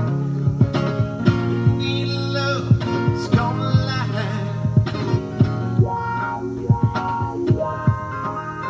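Electric guitar strummed in a steady rhythm, each stroke sharp and the chords ringing on between strokes, as part of a live song.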